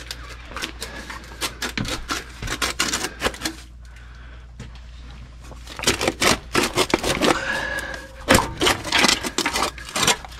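Irregular clicks, knocks and rubbing from close-range handling as someone moves about among pipes and ductwork. They get busier and louder about six seconds in, over a low steady hum.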